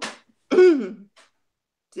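A person clearing their throat once with a short cough, a single voiced rasp falling in pitch about half a second in.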